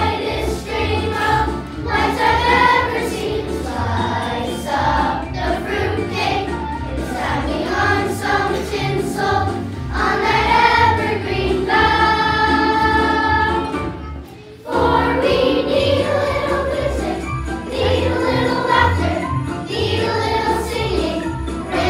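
Children's choir singing together, holding one long note about twelve seconds in, with a brief break just before fifteen seconds before the song goes on.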